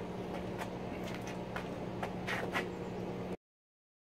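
A steady low hum with a few faint clicks and short chirps, cutting off to silence about three and a half seconds in.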